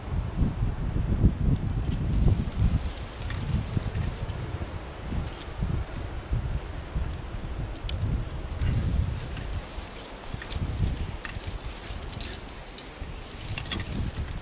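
Wind buffeting the microphone in gusts, with light metallic clinks of climbing hardware (cams and carabiners) on a harness during a rappel.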